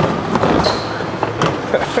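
Warehouse tote conveyor moving a plastic tote up to a pick station: a string of irregular clacks and knocks over a steady machine hum, with a brief high tone a little over half a second in.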